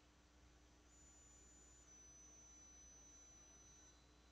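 Near silence: a faint electrical hum with a faint high-pitched whine that starts about a second in and steps down in pitch about two seconds in.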